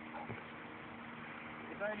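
Faint, steady low hum over a background hiss, with no distinct strikes or events. A man starts speaking right at the end.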